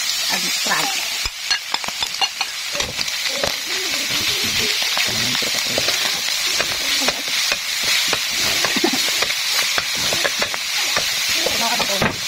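Eel and chili stir-frying in a metal wok: a steady sizzle of hot oil, with frequent clinks and scrapes of a metal spatula against the pan as fresh green leaves are stirred in.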